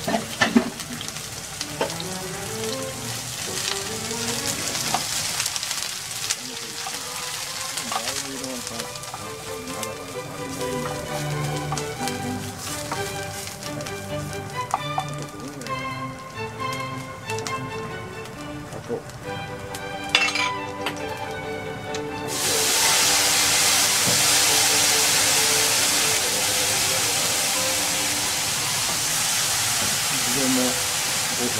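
Strips of udo frying in hot oil in a frying pan, a steady sizzle with a few sharp clinks of a utensil against the pan. About two-thirds of the way through a much louder hiss starts suddenly and holds, as liquid seasoning hits the hot pan.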